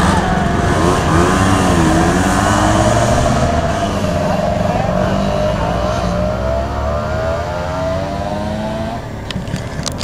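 Several Vespa scooter engines labouring up a steep climb one after another, their notes rising and falling as they pass. The engine sound drops away about nine seconds in, with a couple of knocks near the end.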